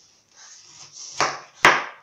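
Kitchen knife cutting the crown off a whole pineapple: a short rasping cut through the tough rind and core, then two sharp knocks, the second and loudest near the end as the top comes free and the blade meets the tray.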